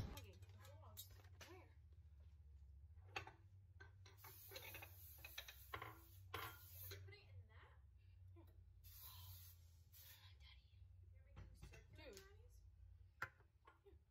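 Near silence: faint room tone with a low hum, faint voices in the background, and a couple of soft clicks, the clearest near the end.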